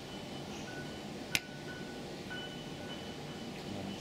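Quiet background music with thin, held high notes over a steady room murmur, broken once, a little over a second in, by a single sharp click or clink.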